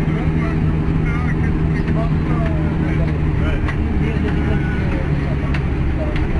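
Steady low engine drone and road noise heard from inside a moving vehicle, with indistinct voices and small rattles over it.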